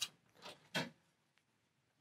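Faint metal handling as a PC case's rear fan bracket, held by spring-loaded captive thumb screws, is lifted off: two short soft knocks or scrapes about half a second and just under a second in, and a small click near the end.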